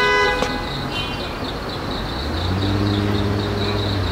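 A brief, steady, high-pitched toot at the very start, then the low, steady hum of an engine that comes in about two seconds in and grows a little louder.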